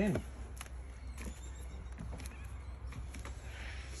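Footsteps climbing up into a caravan and walking across its floor: a scatter of light knocks over a low steady hum.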